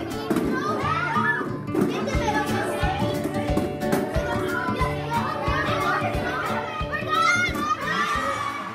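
Girls' excited chatter and shrieks over background music with a steady beat, with a burst of high-pitched squeals near the end.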